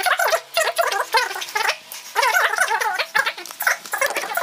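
A man's speech played fast-forward, sped up into high-pitched, garbled chatter.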